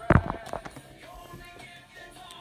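Music playing in the background, with a single loud thump just after the start.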